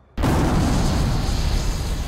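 Hurricane wind and heavy surf crashing, cutting in abruptly just after the start as a loud, steady rush of noise with a strong deep rumble.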